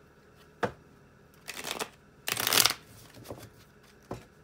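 Tarot cards being handled: a light tap about half a second in, then two short rustles, the second one louder, around one and a half and two and a half seconds in.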